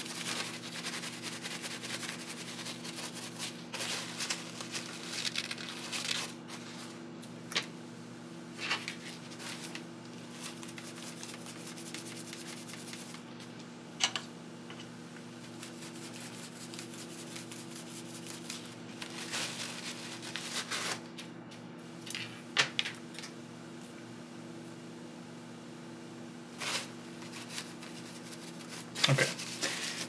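Paper towel rubbing and crinkling against a small ESC circuit board as it is scrubbed clean, in uneven spells with a few sharp clicks, over a steady low hum.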